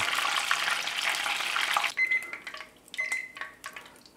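A breaded beef croquette deep-frying in hot oil at 180 °C: a steady sizzle and bubbling that stops suddenly about two seconds in. After it, a few light clicks and two short high beeps.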